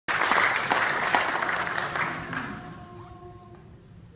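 Audience applause that fades out over about two and a half seconds. A faint, short held note follows.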